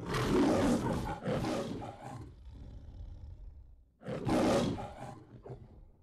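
The Metro-Goldwyn-Mayer logo lion roaring. A long first roar in two pulses is followed by a quieter stretch, then a second, shorter roar about four seconds in.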